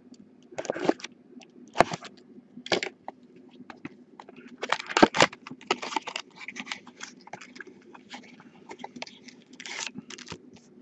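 Small cardboard trading-card boxes being torn open and handled by hand: a run of scrapes, rustles and crackles with a sharp click about two seconds in and a dense stretch of crackling around five seconds in.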